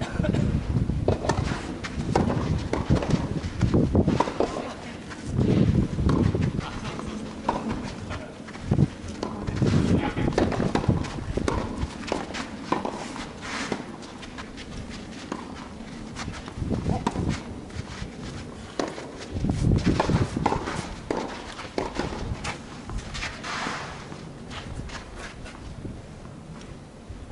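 Outdoor tennis-court ambience: several gusts of low rumble buffet the microphone, with scattered short clicks and taps and players' footsteps on the court.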